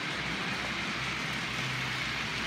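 OO gauge model trains running on the layout: a steady rolling hiss from wheels on the track, with a faint low motor hum coming in about a second in.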